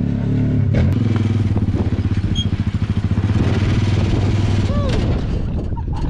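Sierra 700R rally car's engine idling close by, a steady low hum with a fast, even pulse through the middle.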